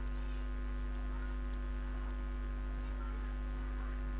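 Steady electrical mains hum, a low even buzz with a ladder of overtones and a faint hiss underneath.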